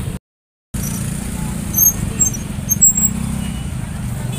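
Busy outdoor market walkway: a motorcycle engine running at low speed under general crowd chatter, a steady low hum with a few short, high, sharp sounds near the middle. The sound cuts out for about half a second near the start.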